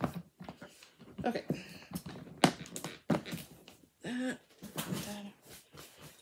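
Irregular clicks, taps and rustles of craft supplies being handled and put away on a tabletop.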